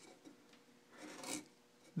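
A hand carving tool shaving through gelutong wood: one short, faint scraping cut about a second in, with the tail of another cut right at the start.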